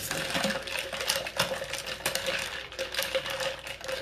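Ice cubes clinking and rattling against the inside of a glass pitcher as a long stirrer swirls a wine cooler, a quick, steady run of many small clicks.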